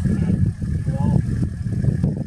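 Low, uneven rumble of a stationary safari vehicle's engine idling, with a brief faint voice about halfway through.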